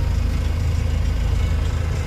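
Bus diesel engine idling while parked, heard from inside the passenger cabin: a steady low rumble with a fine, even pulse.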